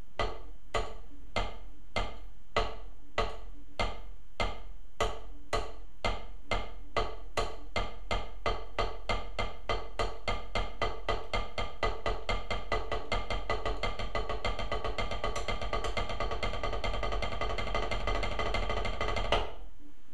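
Double stroke roll (right-right-left-left) played with wooden drumsticks on a drum practice pad: the strokes start slow and evenly spaced and speed up steadily into a fast, dense roll that stops abruptly near the end.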